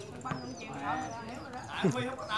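A volleyball is struck by a player's hand near the end, a single sharp smack over the ongoing chatter and calls of players and onlookers.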